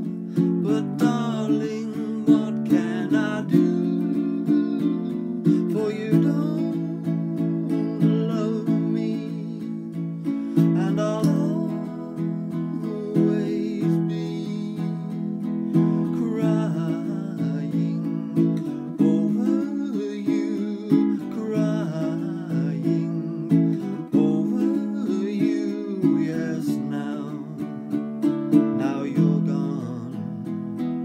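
A ukulele strummed in steady chords, with a man singing along.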